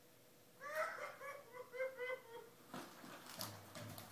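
A 31-week-old baby giggling in a quick run of short, high-pitched bursts, followed by light clicks and knocks as the baby walker moves against the toys.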